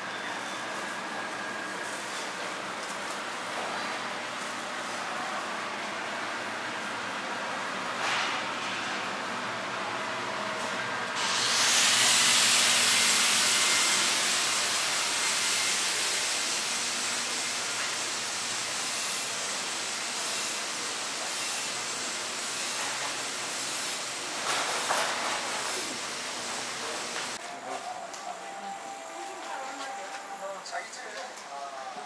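Busy market-aisle background noise; about a third of the way in a loud, steady hiss starts suddenly, slowly fades and cuts off about three-quarters through, with a couple of brief knocks along the way.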